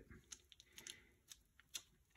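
Near silence, with a few faint, short clicks of fingers smoothing a coil of air-dry clay on paper.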